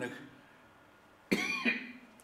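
A man coughs once, a sudden short cough a little over a second in, following a brief pause in his speech.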